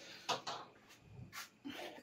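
A few faint knocks and clinks of a three-litre glass jar being handled and lifted off the countertop.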